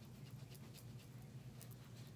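Near silence: room tone with a low steady hum and a few faint soft ticks.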